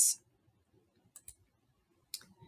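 Two faint, quick computer clicks about a second in, advancing a presentation slide, over otherwise near silence.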